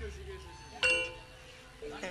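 Sparse Javanese gamelan playing: a single struck bronze note about a second in, ringing with a bell-like tone and dying away. The low ring of a deeper struck note fades out at the start.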